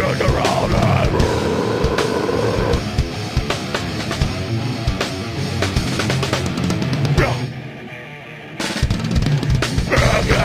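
A live heavy metal band playing loud, with distorted electric guitars, a pounding drum kit and vocals. Near the end the band stops for about a second, then crashes back in.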